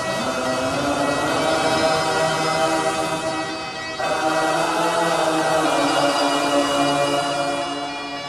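Singers holding long wordless notes in harmony, in two sustained phrases of about four seconds each.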